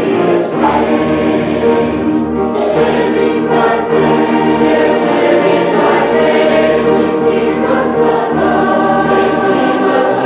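A youth choir singing a Christian song together, many voices holding sustained notes in chorus.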